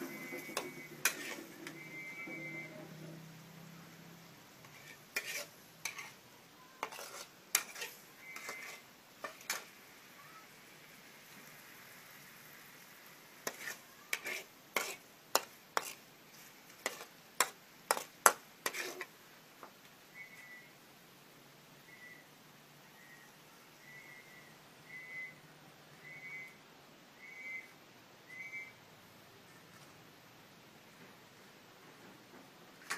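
Metal spatula scraping and clacking against a steel wok while beef pieces are stir-fried in oil, over a faint sizzle. The clacks come in two quick runs, the second, from about 13 to 19 seconds in, the loudest.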